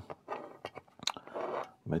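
Small plastic model-kit parts handled and knocked together: light clicks and rustles, with one sharper click about a second in.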